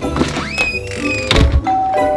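Background music with a rising, whistle-like slide early on, then one dull, heavy thunk about a second and a half in.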